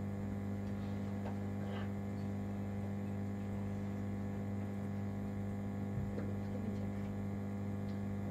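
Steady electrical mains hum, a low buzz with a stack of overtones, with a few faint clicks.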